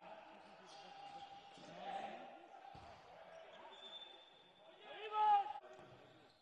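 Handball bouncing on a sports-hall floor during play, with players' shouts; one shout about five seconds in is the loudest sound.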